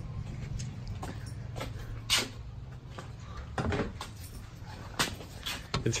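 A few sharp knocks and clunks, the loudest about two seconds in, over a steady low hum.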